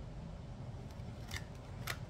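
Tarot cards being handled: two short, crisp papery swishes of cards slid off the deck, one about a second and a half in and one near the end.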